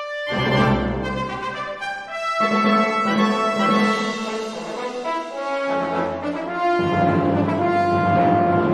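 Recorded music: a tuba with a brass or orchestral ensemble, entering loudly and fully about a third of a second in. It goes on as sustained brass chords with deep low notes, the harmony changing every second or two.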